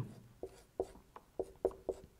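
Marker pen squeaking on a whiteboard in a run of short strokes, about half a dozen in two seconds, as a line of handwriting goes on.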